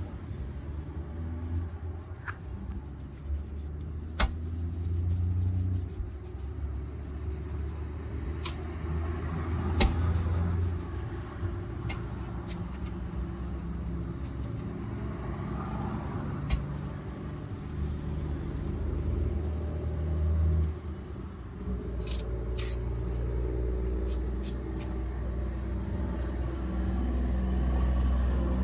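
Passing street traffic making a low rumble that swells and fades, under the softer rubbing and brushing of a shoe shine on leather shoes, with a few sharp clicks.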